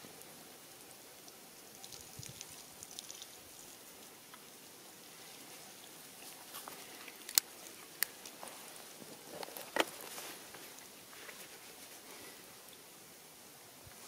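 Quiet outdoor background hiss, broken about halfway through by a few sharp clicks: two a little over half a second apart, then a third about two seconds later.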